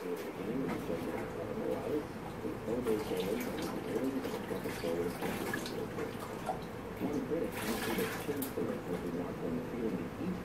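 Water sloshing and splashing in a plastic bucket as a clay tile is dipped and worked in it by hand, in bursts about three seconds in and again near eight seconds.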